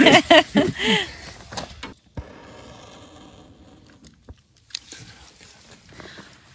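People laughing for about a second. Then, after an abrupt cut, a faint steady hiss with a few sharp clicks near the end.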